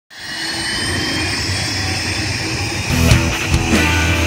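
A jet turbine's steady rush and high whine for about three seconds, then a rock music intro with drums and electric guitar comes in.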